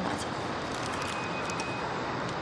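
Steady outdoor background noise with a faint, thin high tone for about a second in the middle.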